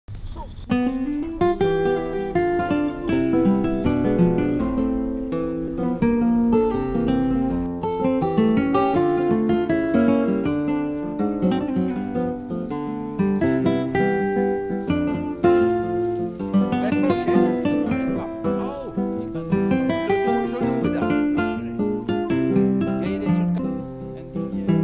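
Background music on acoustic guitar: a continuous run of plucked notes and strummed chords.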